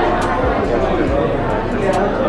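Indistinct talking and crowd chatter, several voices overlapping with no clear words.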